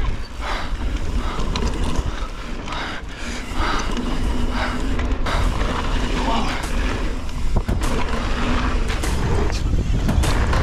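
Mountain bike descending a dirt and gravel trail at speed: tyre noise on loose ground and the bike rattling over bumps, with wind buffeting the action-camera microphone.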